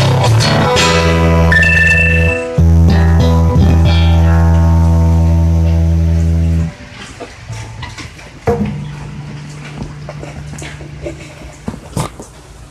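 Instrumental guitar music: plucked guitar chords over a held low bass note. It stops abruptly a bit past halfway, leaving a much quieter stretch in which a single low note sounds and rings on.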